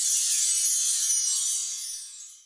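A high, sparkly, hissing sound effect from an advertising ident. Its pitch glides slowly downward, and it fades out near the end.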